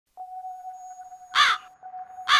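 A single loud, harsh cawing bird call about one and a half seconds in, over a steady high-pitched tone that begins just after the start.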